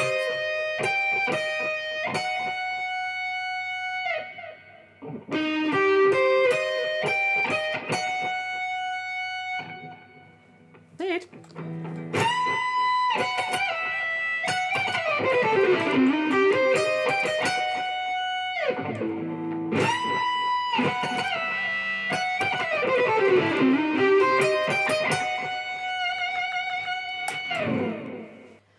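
Stratocaster electric guitar playing a lead solo passage of single notes with bends, slides and pull-offs, in four phrases with short breaks between them. Two long sliding runs fall in pitch, about halfway through and again near the end.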